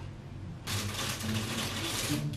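Plastic chip bag crinkling and rustling as it is handled, starting under a second in, over a low steady hum.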